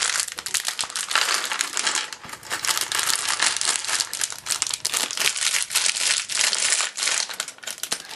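Plastic bag of Lego pieces crinkling as it is handled and torn open: a dense, irregular run of crackles with short pauses.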